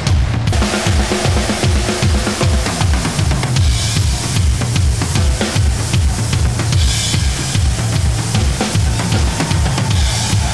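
Live rock drum solo on a Pearl drum kit: steady bass drum beats about three a second, with snare and cymbal hits over them.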